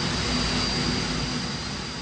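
Test rig for the SABRE engine's air-cooling system, running steadily: an even rush of high-speed air with a thin, steady high whine on top, easing slightly near the end.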